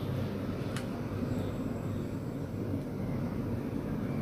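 Steady low background hum, with one faint click about three quarters of a second in.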